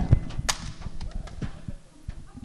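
A single sharp crack about half a second in, then a few fainter clicks and soft low thuds: knocks and handling noise on a podium microphone.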